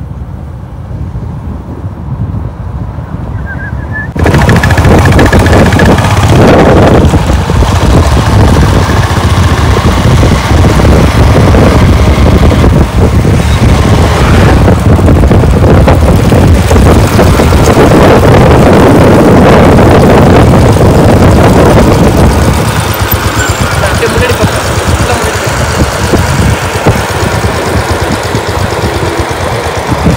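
Motorcycle engine running while riding on an open road, heavily covered by wind buffeting on the microphone. The sound jumps suddenly to a loud roar about four seconds in.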